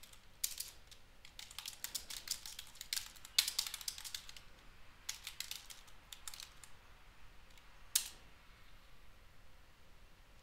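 Typing on a computer keyboard: a quick run of key clicks for about five seconds, pausing, then one sharper single click near eight seconds in.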